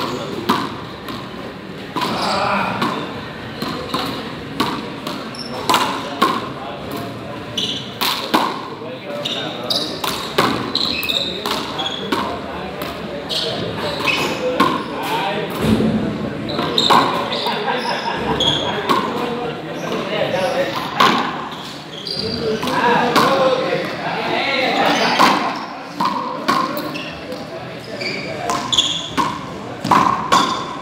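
Frontón rally: a small rubber ball struck again and again, hitting the front wall and bouncing off the concrete floor as sharp knocks every second or so, over indistinct voices.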